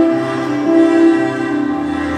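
A children's ensemble of pianikas (melodicas) playing a slow melody together in long, steady held notes, with a low bass line underneath.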